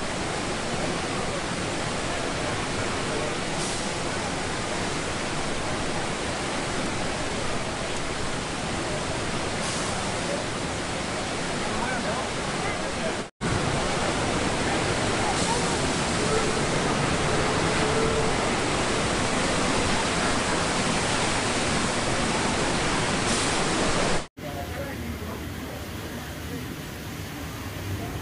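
Steady rush of water pouring down a log flume chute and into its trough, an even hiss with no distinct splash, broken by two brief dropouts about halfway through and near the end.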